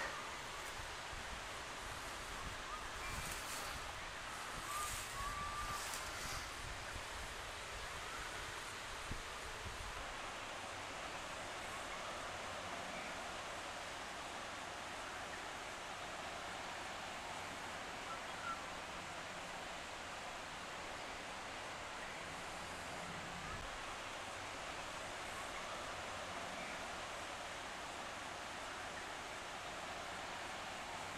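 Dry straw rustling briefly a few times a few seconds in as a blue-tongued skink is lifted out of it by hand, over steady outdoor hiss. Wind buffets the microphone with a low rumble during the first ten seconds.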